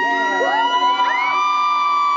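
Male a cappella voices sliding up one after another into high held falsetto notes, stacking into a sustained chord.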